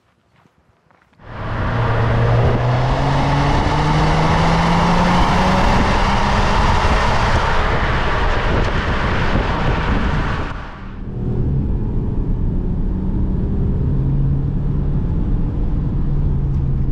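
Stage 1-remapped Audi A4 3.0 TDI V6 diesel accelerating on the road, recorded beside the exhaust tip with heavy wind and tyre noise; the engine note rises steadily in pitch. About eleven seconds in it cuts to a quieter, steady engine drone heard inside the cabin.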